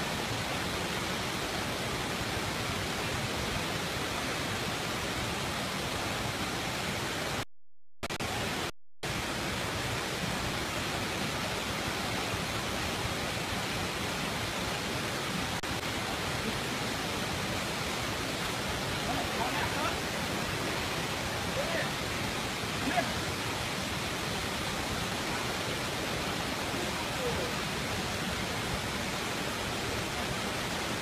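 Steady rushing of stream water, even and unbroken, cutting out briefly twice about eight seconds in.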